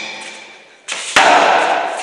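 Heavy punching bag being hit: a lighter hit a little under a second in, then a hard, sharp smack that echoes and dies away slowly in the bare room.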